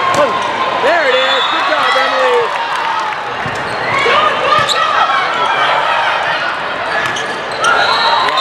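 Indoor volleyball rally echoing in a large hall: players shouting calls and the ball being struck several times, over a steady background of crowd and court noise.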